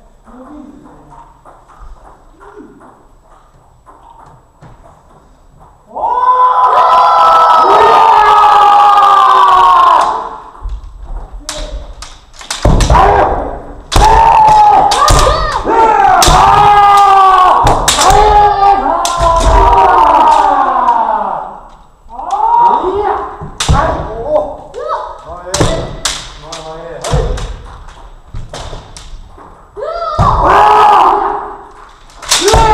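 Kendo sparring: loud, drawn-out kiai shouts from the fencers, mixed with sharp cracks of bamboo shinai striking armour and thuds of stamping footwork on the wooden floor. The first few seconds are quieter, and the shouting starts about six seconds in.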